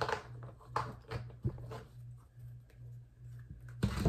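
Tarot cards being handled and shuffled by hand: a few light clicks and taps in the first second and a half, then little but a low steady hum.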